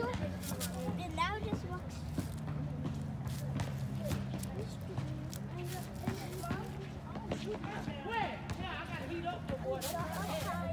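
Indistinct voices in the background, with no clear words, over a steady low hum, with scattered light clicks and knocks.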